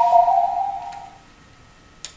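A short electronic chime: two steady, clear tones together that fade out about a second in.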